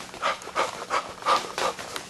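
A man breathing hard and fast, about five quick breaths in two seconds, acting out running hard while wearing a full-face costume helmet.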